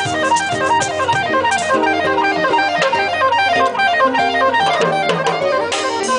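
Live acoustic trio music: quick runs of plucked notes on an acoustic guitar over hand-percussion hits, with a saxophone.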